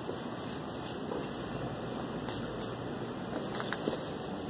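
Steady hum of indoor room noise, like a fan or air conditioning, with a few faint clicks about halfway through and near the end.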